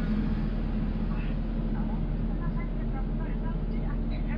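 Steady low drone of a bus engine running, heard from inside the passenger cabin, with faint voices over it.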